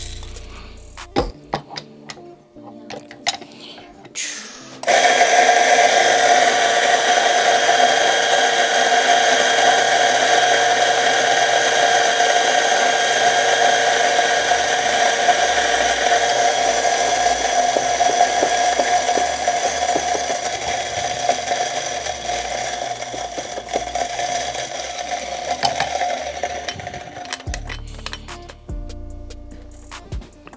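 Electric espresso grinder motor grinding coffee beans into a portafilter, a loud steady whine that starts about five seconds in and stops a couple of seconds before the end. A few clicks and knocks of handling come first.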